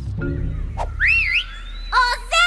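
Soft background music fading out. About a second in, a short whistled chirp glides up and down in pitch: an animated bird's call.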